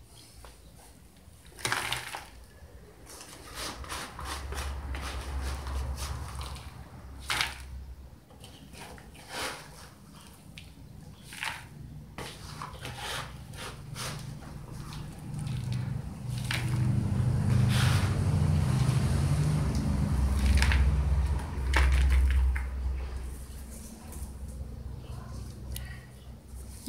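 Plastic plant pots being handled and set down, with scattered knocks and clicks and the crunch and rustle of loose potting mix. A low rumble rises in the middle and is loudest in the second half.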